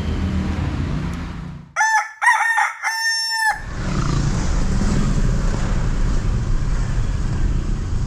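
A rooster crowing: one cock-a-doodle-doo in three linked parts about two seconds in, clean with nothing under it, a sound effect for the cut to the next morning. Afterwards, steady engine and road noise inside a moving car's cabin.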